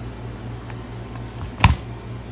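A single sharp knock from the steel Walther P1 pistol being handled and set down, about a second and a half in, preceded by a few faint ticks. A steady low hum runs underneath.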